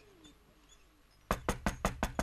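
Rapid knocking on a wooden door, a quick run of sharp raps that starts a little over a second in.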